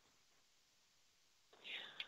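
Near silence, a gap in the conversation, with one faint short sound near the end.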